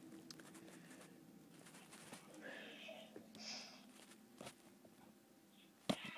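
Faint scratching and a couple of small clicks of a fingernail picking at a sticker label on a DVD case. A sharper click comes just before the end.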